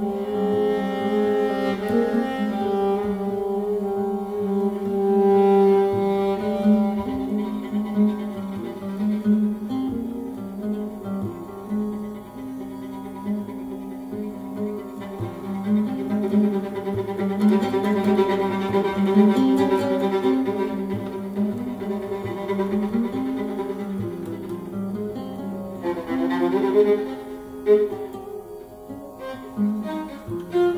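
Viola and oud duet in an ethno-jazz style: the viola bows a sustained, slightly melancholic melody while the oud plucks along beneath it. The plucked oud notes come through more sharply about two-thirds of the way in and again near the end.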